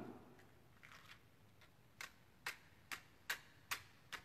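A hand-held lighter being struck five times, about two clicks a second, without catching: short, sharp, faint clicks.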